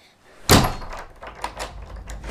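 Loud bang on a wooden door about half a second in, followed by a few weaker knocks. A low rumble sets in with the first bang.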